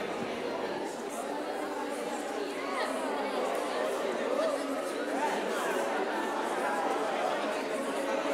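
A congregation of many people chatting and greeting one another at once in a large hall: a steady hubbub of overlapping voices, with no single voice standing out.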